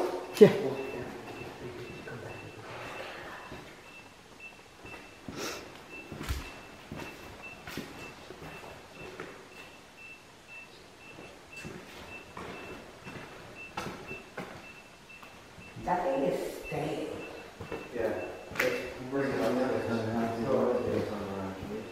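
A faint, high-pitched electronic beep repeating evenly and steadily, typical of a ghost-hunting meter. There are scattered light knocks and a sharp click just after the start, and low voices come in near the end.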